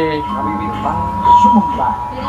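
Music from the television's wedding video, with long held notes, mixed with voices.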